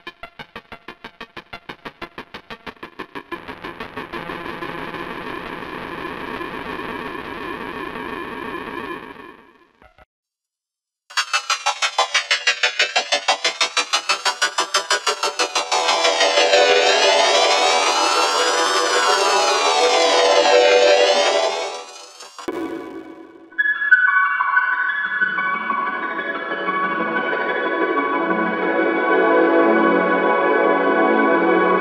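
Synthesized film-logo jingle run through electronic audio effects: a rapidly pulsing tone settles into a held chord, then cuts out briefly about ten seconds in. It returns as a stuttering passage with zigzag rising and falling pitch sweeps, and after a short break it ends on another held chord.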